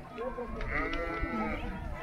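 A sheep bleats once, a wavering call about a second long, starting just under a second in, over people's voices in the background.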